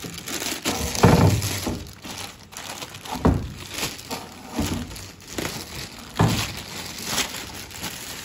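Thin plastic packing bag crinkling and rustling as it is pulled off a mixer, irregular throughout, with a few louder handling bumps about one, three and six seconds in.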